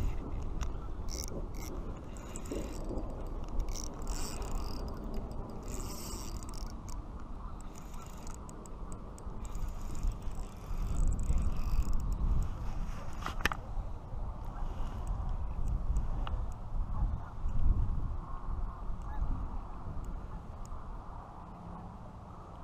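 Close handling noise while a hooked trout is played on a spinning reel: a rumbling rub against the camera that swells in the middle, with scattered light clicks from the reel and tackle.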